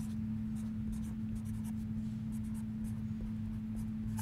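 Black marker pen writing letters on paper: a quick series of short scratchy strokes, over a steady low hum.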